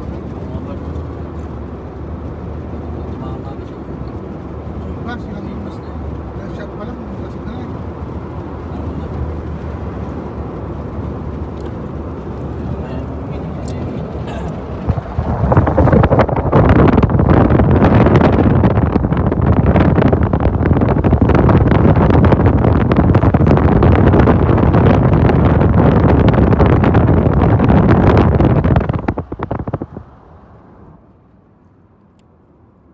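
Car moving at highway speed: a steady drone of engine and road noise inside the cabin. About halfway through it jumps to a much louder rush of wind and tyre noise from the open side window, which falls away just before the end.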